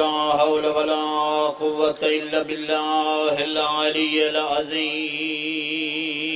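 A man's voice chanting a devotional recitation in long, held, wavering notes.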